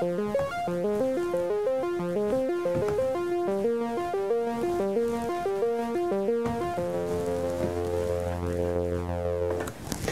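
A sawtooth synthesizer patch in Pure Data plays a fast repeating four-note arpeggio stepped out by a metro and counter. About two-thirds through, the pitches being entered live collapse to one low note repeated. The sequence stops just before the end.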